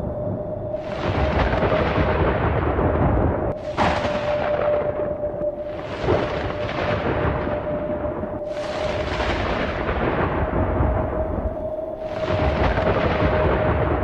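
Thunderstorm sound effect: rolling thunder that breaks out suddenly five times, a few seconds apart, each clap rumbling away, over a steady held tone.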